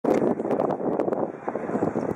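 Outdoor stadium ambience: wind rushing on the microphone over faint spectator chatter, with scattered clicks.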